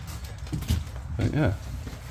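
Speech: a man briefly says "yeah" over a low background rumble. No other sound stands out.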